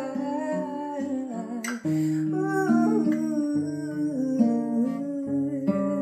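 Acoustic guitar playing chords in an instrumental passage of a song, with a woman's wordless vocal line humming a melody over it. The chords change about two seconds in.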